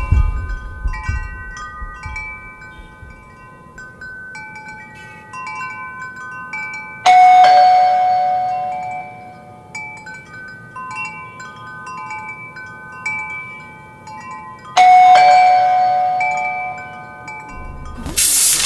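Soundtrack music of chime-like bell tones: a slow pattern of clear, ringing notes, with a louder struck chord about seven seconds in and again near the end, each ringing out and fading.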